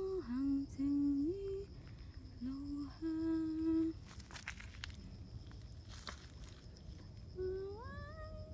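A woman humming a slow tune in a few held, gliding notes during the first four seconds. After a pause with a couple of brief knocks from handling the phone, the humming resumes with a rising note near the end.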